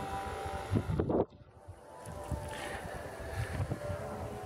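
Wind buffeting a camera's built-in microphone, with faint steady tones under it. The sound cuts out abruptly about a second in, then builds back gradually.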